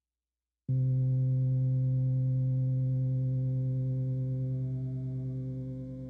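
A synthesizer holding one steady, sustained tone that comes in suddenly just under a second in, with a slight wavering pulse in its loudness, slowly fading toward the end.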